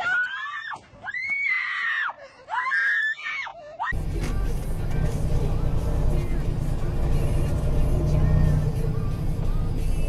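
A woman screaming: three long, high-pitched, rising-and-falling shrieks in the first four seconds. Then an abrupt cut to steady background music.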